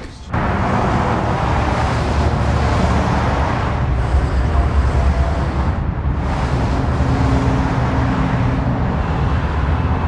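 Steady road traffic noise: a loud, low rumble of passing vehicles that starts abruptly just after the beginning.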